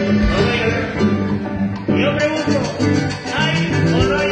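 Live band playing upbeat Latin dance music, loud and continuous, with a steady beat.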